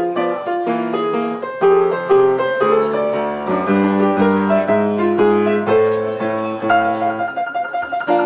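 Piano music: single notes and chords struck and left to ring, with a longer held chord over a low bass note in the middle.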